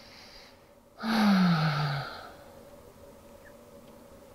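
A woman's audible sigh: a soft breath in, then about a second in a voiced breath out that falls in pitch and lasts about a second, released while holding a seated pigeon hip stretch.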